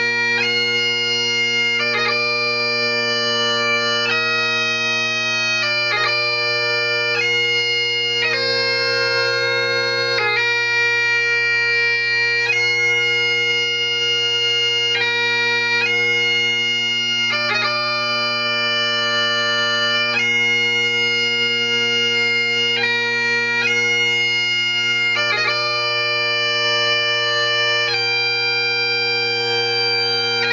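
Great Highland bagpipe playing a slow piobaireachd lament. The chanter holds each melody note for a second or two, and short grace-note flicks mark the moves between notes, over the steady, unbroken sound of the drones.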